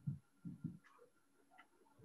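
Mostly near silence, broken by a few faint, short low knocks in the first second.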